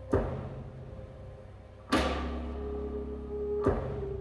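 Slow dark jazz played live by a band with saxophone, vibraphone, double bass and drums: three sharp percussive hits, each ringing off, come about two seconds apart over low held bass notes and a sustained mid-range tone that moves to a new pitch after the second hit.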